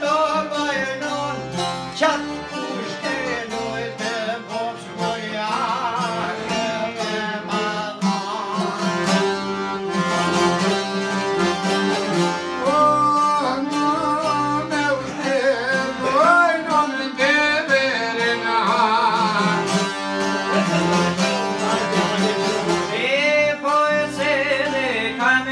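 Albanian folk ensemble playing together: accordion, long-necked plucked lutes, a bowl-backed lute and a bowed string instrument, with a man's voice singing a wavering, ornamented melody over them.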